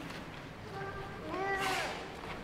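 A high-pitched voice in the church hall: a short call about a second in, then a longer call that rises and falls in pitch near the end.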